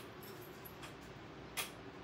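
A few light clicks and taps from painting supplies being handled, the loudest about one and a half seconds in.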